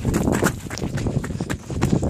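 Quick, irregular footsteps of someone hurrying on foot, mixed with rustling and knocking from a hand-held camera being jostled.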